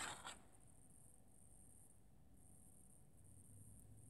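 Near silence: room tone, after a short faint noise at the very start.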